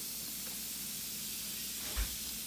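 Steady high fizzing hiss of an LOL Pearl Surprise's effervescent shell dissolving in a bowl of water, with a brief low bump at the very end.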